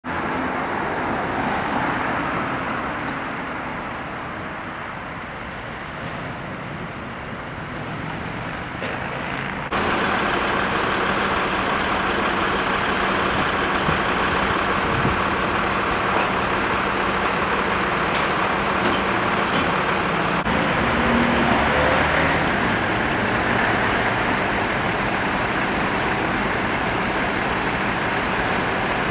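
Street traffic and a vehicle engine running steadily, louder from about ten seconds in.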